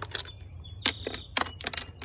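Polished black decorative stones clicking against one another and the planter as they are set in place by hand: a run of about eight short, sharp knocks.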